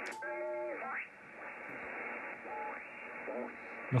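Yaesu FTdx5000 HF transceiver receiving single sideband: steady band-noise hiss, with snatches of off-tune sideband voices that slide in pitch as the dial is tuned across stations, once near the start and again about two and a half seconds in.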